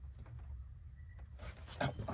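Faint handling noise from a hand working blind behind the headlight: light rustles and small clicks over a steady low rumble, with a brief louder scrape near the end.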